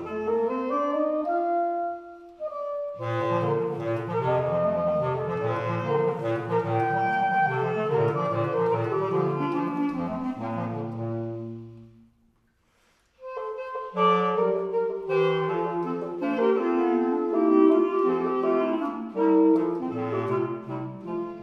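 Three basset horns playing a classical trio in close counterpoint. The lower parts drop out for a moment about two seconds in. The full trio stops together about twelve seconds in, and after a second of silence the playing starts again.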